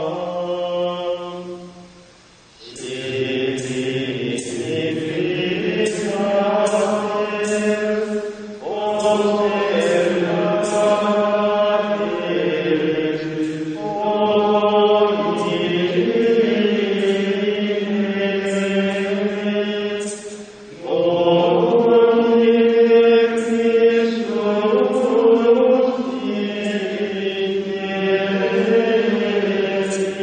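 Gregorian chant sung in unison by a choir, long sustained phrases with short breaks between them about 2 and 20 seconds in.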